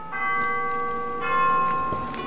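Two struck bell-like chime tones, the first just after the start and the second about a second later, each ringing on and slowly fading.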